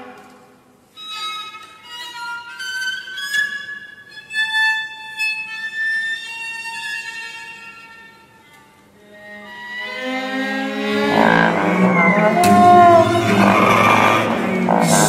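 Viola playing a quiet line of thin, high held notes. About ten seconds in, the ensemble enters with low notes and grows much louder, bass trombone among it.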